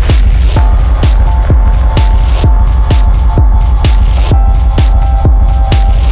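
Dark minimal techno: a steady kick drum at about two beats a second over deep bass. A held synth tone comes in about half a second in and steps down in pitch a little after four seconds, over a layer of hiss.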